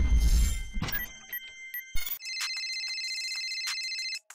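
A cinematic logo sting with a deep rumble fades out in the first second. After a thump about two seconds in, a mobile phone ringtone plays steadily and stops abruptly at the end.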